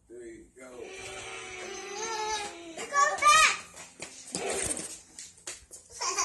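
Young children's voices calling out in play, with a loud, high-pitched squeal about three seconds in.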